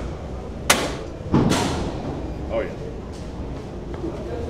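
Metal weight stack of a cable machine being set down: a sharp click, then a heavier clank with a ringing tail echoing in a large gym hall.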